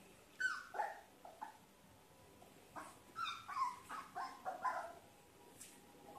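A one-month-old Labrador retriever puppy giving small, high-pitched yips and barks while playing at a slipper, each call falling in pitch: three near the start, then a run of about six from about three seconds in.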